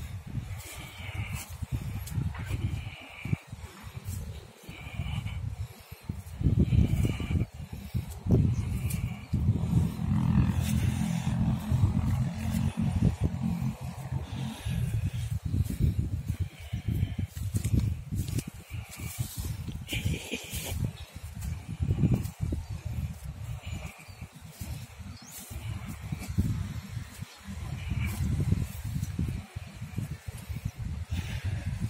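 Wind buffeting the microphone in an open field: a low, gusting rumble that swells and fades, strongest about a third of the way in and again near the end.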